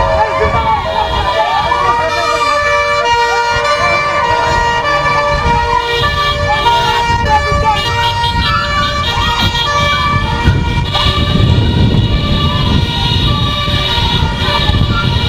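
Police vehicle sirens sounding as several steady held tones, with gliding pitches in the first few seconds, over a shouting crowd. Heavy rumble and knocking from the handheld microphone being jostled grows stronger near the end.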